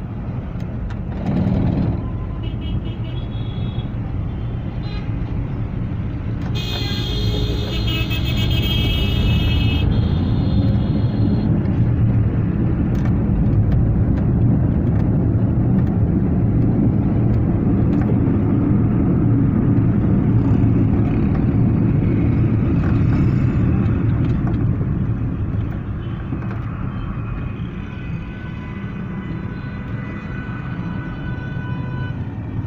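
Engine and road noise heard from inside a car in city traffic: a steady low rumble that grows louder as the car gets moving and eases off near the end. About seven seconds in, a high tone with several overtones sounds for about three seconds.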